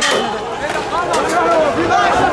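Several men's voices talking over one another at once, the indistinct chatter of a crowd, starting abruptly at a cut.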